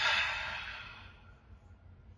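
A man's deep breath let out through the mouth: one long exhale, like a sigh, that starts loud and fades away over about a second.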